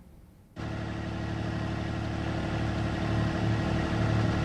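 A motorboat engine running steadily. It cuts in suddenly about half a second in after a brief hush.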